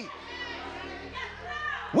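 Faint, high-pitched voices from the congregation calling out in a reverberant church hall, over a low held musical chord.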